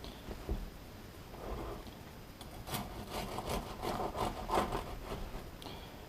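Serrated bread knife sawing through the crisp crust of a sourdough loaf on a wooden cutting board: soft handling at first, then a run of quick rasping strokes in the second half.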